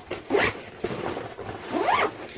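Backpack zipper being pulled, in two quick runs: one about half a second in and a longer, rising one near the end.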